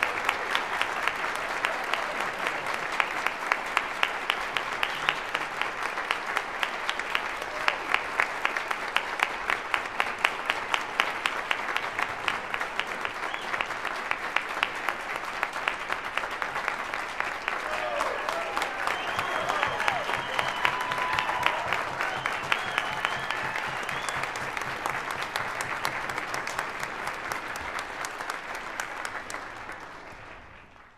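Audience and band applauding steadily at the end of a performance, a dense patter of many hands clapping. Voices cheer over the clapping around two-thirds of the way through, and the applause dies away near the end.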